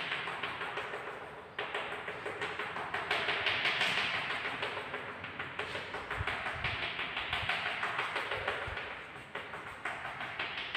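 Chalk tapping and scratching on a chalkboard in quick short strokes, several a second, as rows of small dashes are marked.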